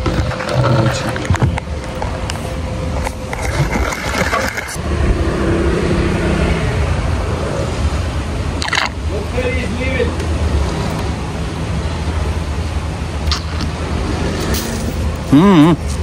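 Outdoor street ambience: a steady low rumble of passing traffic with faint voices in the background, and a voice near the end.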